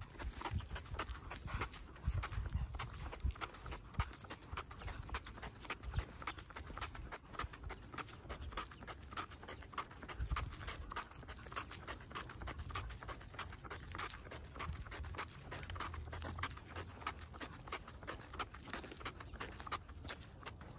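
Footsteps on asphalt: a Cavalier King Charles Spaniel in rubber booties walking on a leash, its feet making quick, light taps, along with the walker's steps. A low rumble sits under the taps.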